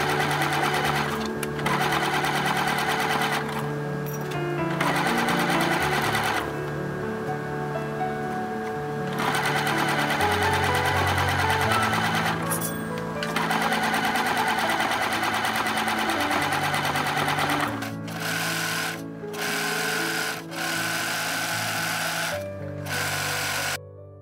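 Bernette B37 computerized sewing machine stitching a rib-knit waistband onto a sweater, running in spurts of a few seconds and stopping briefly several times, with one longer pause about six seconds in. Soft background music runs underneath and the machine cuts off just before the end.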